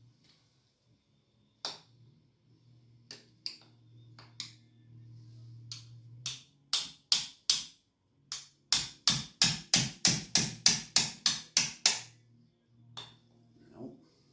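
Hand socket ratchet clicking as it is worked on the cylinder head nuts: a few scattered clicks, then a quick run of about four clicks a second from about eight seconds in until near the end, over a faint low hum.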